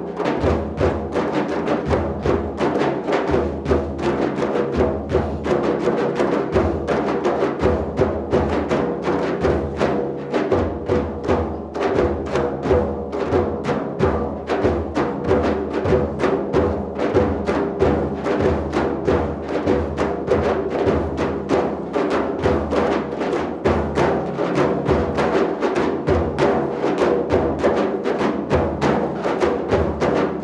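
An ensemble of hand-played frame drums playing a fast, dense rhythm, with deep bass strokes under many quicker strikes.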